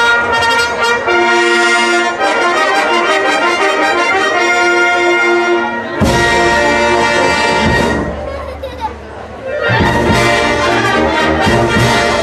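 Live concert band playing sustained brass chords. Low bass comes in strongly about halfway through, the band drops softer for a moment about two-thirds of the way in, then plays full again.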